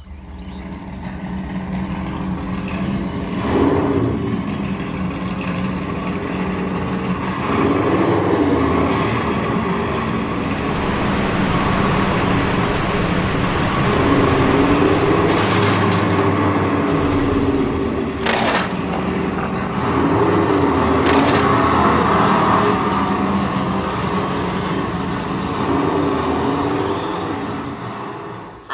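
The electric motor and gearbox of a radio-controlled model truck whining steadily under load as it drags a toy Land Rover out of the water on a chain, the pitch sagging and recovering several times. Several sharp cracks come about halfway through.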